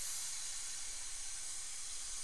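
Steady, even hiss of air from dental equipment, with no pitched whine and no changes.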